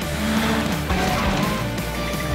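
Background music with a steady beat, mixed with a drift car's engine revving up and down and its tyres skidding.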